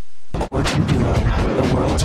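Heavily distorted, effect-processed audio of an Intel Core 2 Duo commercial: a steady hiss that breaks about a third of a second in into a loud, dense noise full of rapid crackling hits.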